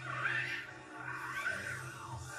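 Film soundtrack playing from a TV: music with two swelling sound effects as a monster is brought to life in crackling electricity.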